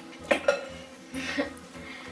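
Two sharp clinks about a third and half a second in, a plastic glue bottle knocking against a glass mixing bowl, followed by faint handling sounds.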